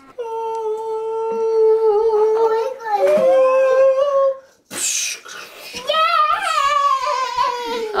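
A voice singing a long, held "ahh" note that rises in pitch about three seconds in. After a brief hiss, a second sung note wavers and falls near the end, like a mock fanfare as the star goes onto the tree.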